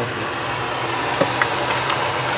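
Steady whirring hum of a kitchen fan running, with a couple of light knocks about a second in.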